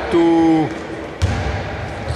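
A man's voice draws out a word, then a basketball bounces once on the indoor court floor a little over a second in, with a single thud.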